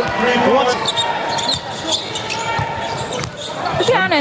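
Basketball game sound in an indoor arena: a steady din of crowd voices, with the sharp thuds of a ball being dribbled on the hardwood court.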